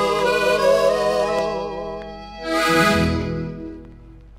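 Closing bars of a Paraguayan polka played by a 1970s folk quartet led by piano accordion: a held, wavering accordion phrase, then the band strikes a final chord about two and a half seconds in that dies away.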